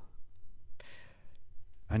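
A man's audible breath at a close microphone during a pause between phrases, with a couple of faint clicks. Speech resumes just before the end.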